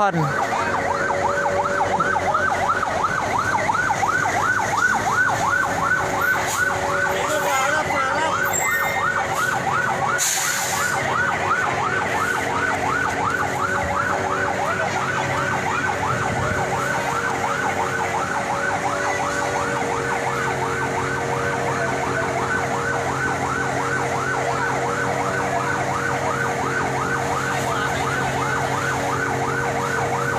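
Fire truck siren sounding a fast yelp: its pitch rises and falls several times a second, over a steady low hum.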